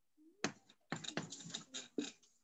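A single click, then a quick, irregular run of soft clicks and taps.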